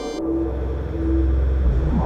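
Low rumbling drone of a dramatic soundtrack effect, slowly building in loudness, with a short held note sounding twice over it.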